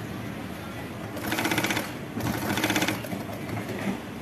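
Kansai multi-needle sewing machine stitching smocking, running in two short bursts of rapid, even stitching, each under a second long, with a brief pause between them.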